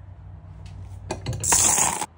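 A couple of light clicks, then a short clatter of metal binder clips tossed onto a cutting mat, the loudest sound, near the end.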